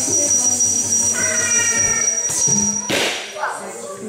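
Indian classical dance music with a singing voice, over a steady high thin whine. About three seconds in there is a sharp hit, and the music drops away after it.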